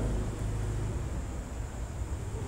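Steady low hum with a faint even hiss: background noise of the room and microphone, with no distinct event.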